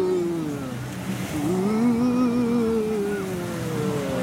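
A person humming a tune in long, sliding, slightly wavering notes.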